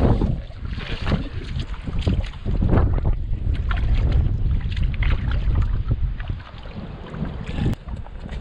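Hands splashing and rummaging in shallow, muddy rock-pool water in irregular bursts, over a steady low rumble of wind on the microphone.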